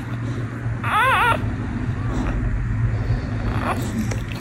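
A newborn American bully puppy gives one short, wavering whimper about a second in, over a steady low hum.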